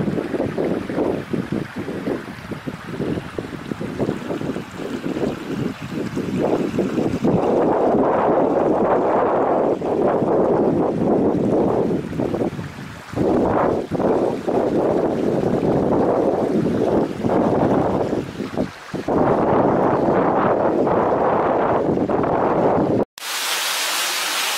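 Shallow mountain stream running over stones, a loud steady rushing noise that breaks off briefly a few times.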